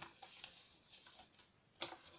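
Faint handling of a paper envelope being sealed: small irregular rustles and clicks, with one sharper click near the end.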